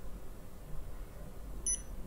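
A single short, high electronic beep from a Holtop Black Cool touch-screen ventilator controller near the end, as a long press on its SET key registers and the controller enters clock-setting mode.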